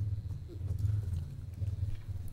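A low, uneven rumble with no words.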